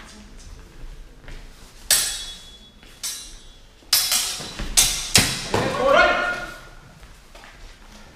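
Steel longswords clashing in a fencing exchange: about five sharp metallic clangs within a few seconds, some with a brief ring, followed by a short shout.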